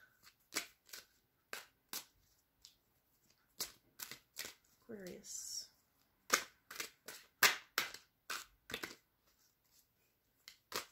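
A tarot deck being shuffled by hand: a string of sharp, irregular card snaps and slaps, more of them in the second half. A short voiced hum comes about five seconds in.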